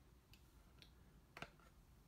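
Near silence: room tone with a few faint clicks, the clearest about one and a half seconds in.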